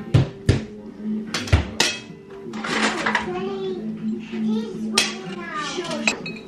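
Utensils and dishes clinking and knocking as food is served onto plates: a few sharp clinks in the first two seconds, then quieter handling.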